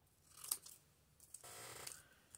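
Faint handling sounds of a pair of scissors being picked up: a sharp click about half a second in, a few small ticks, then a short soft rustle near the end.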